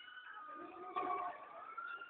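Riders on a swinging pendulum amusement ride screaming, several high voices held and overlapping, with slow rises and falls in pitch and a louder swell about a second in.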